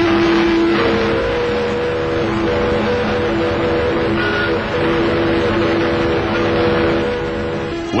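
Several harbour boat whistles blowing long, steady blasts at different pitches, overlapping and starting and stopping, in welcome to an arriving liner, over a steady rushing noise.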